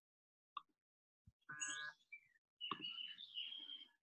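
A faint click, then a few faint, short, high-pitched chirping calls, the last one a thin held tone of about a second.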